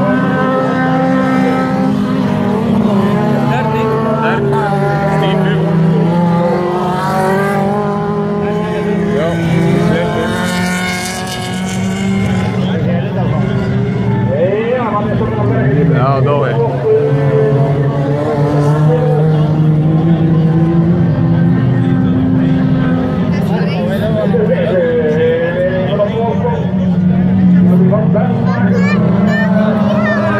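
Several autocross race cars' engines running hard on a dirt track, their pitch rising and falling as the drivers rev, shift and back off. The engines overlap continuously.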